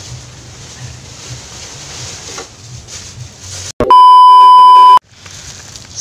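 A single loud, steady electronic beep, a pure high tone lasting just over a second, that starts abruptly about four seconds in and stops just as abruptly, with the audio cut out on either side of it: a bleep tone edited into the soundtrack. Before it there is only faint outdoor background with a low rumble.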